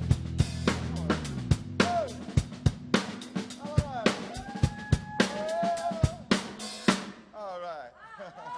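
Tama drum kit played hard in a rapid run of snare, bass-drum and cymbal hits, the drummer's fill closing out a live rock song. A held band chord dies away in the first second or two, and voices call out over the drumming in the middle.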